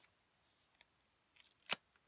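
Plastic bubble wrap and foam wrapping handled by hand: a brief crinkle late on, then one sharp snap.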